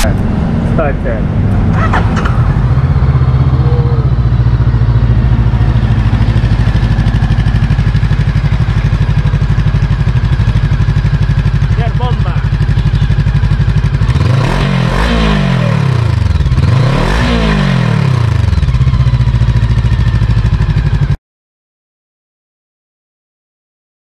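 VOGE motorcycle engine idling steadily, with the throttle blipped twice in a row past the middle, each rev rising and falling back to idle. The sound cuts off abruptly near the end.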